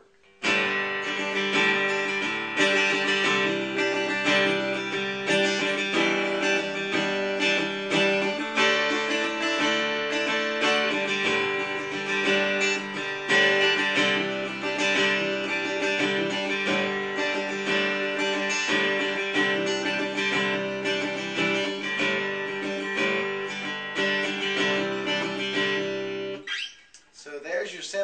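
Acoustic guitar strummed in a steady rhythm, with a note hammered on within the chord so that each chord gives two sounds. The playing stops near the end.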